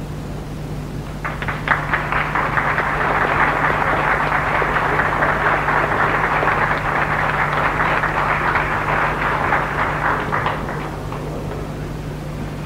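Audience applauding: the clapping starts about a second in, holds steady, and dies away near the end, over a steady low hum.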